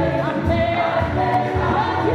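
A large church choir singing a gospel song together, many voices held on sustained notes, with a low beat about twice a second underneath.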